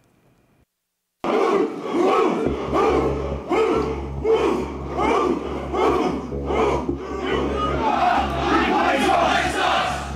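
After about a second of near silence, a large crowd of men chants in unison, loud and rhythmic, a shouted chant of "You will not replace us!", and the chanting grows more ragged near the end. A low steady hum runs underneath.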